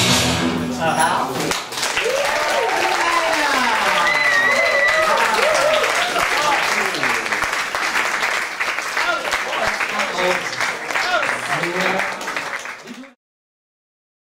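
Playback music ends about a second and a half in, then an audience applauds with cheering and shouting voices. The applause fades out near the end.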